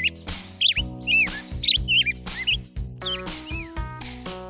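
Background music with a string of short, high bird chirps over it, most of them in the first two seconds and a few fainter ones a little later.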